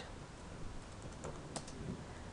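A few faint keystrokes on a computer keyboard, typing in a length value. The light clicks come scattered through the second half.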